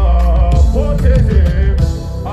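Live song played loud through a festival sound system: a male voice singing a melodic line into a microphone over a heavy bass beat with drum hits.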